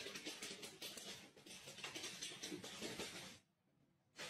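Dog's claws clicking and scrabbling rapidly on a hardwood floor for about three and a half seconds, then stopping abruptly.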